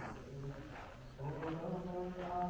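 A male voice chanting in long, steady held notes, Buddhist temple chanting, growing stronger about a second in. Footsteps on a gravel courtyard fall at a walking pace.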